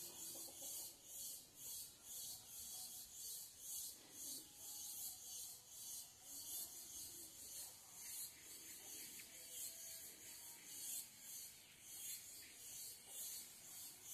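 Cicadas singing: a faint, high, rasping buzz that pulses steadily.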